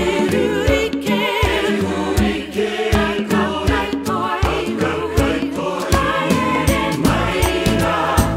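A traditional Māori song sung by a choir with a soprano voice with wide vibrato, over instrumental backing with a steady low beat.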